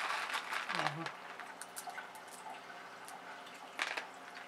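Water squirted from a small squeeze bottle onto clay pebbles in a plastic tub, hissing for about the first second, then faint drips and small clicks of pebbles being moved by hand, with another short squirt near the end. A brief low voice sound comes about a second in.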